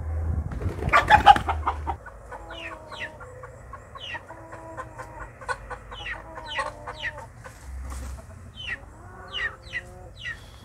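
Chicken wings flapping in a loud, rattling burst about a second in as a bird flies up into a tree to roost, then chickens clucking as they settle in the branches, with many short, high, falling chirps.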